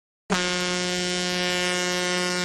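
A steady, buzzy electronic tone sets in about a third of a second in and holds at one low pitch, rich in overtones.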